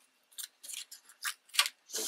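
Crumpled momigami paper crinkling as it is handled in the fingers, a string of short, irregular crackles.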